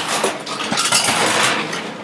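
Ice cubes clinking and rattling in a mixing glass as the drink is stirred with a bar spoon, a dense, continuous clatter.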